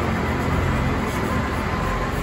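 Steady low rumble of background noise with no distinct separate strokes.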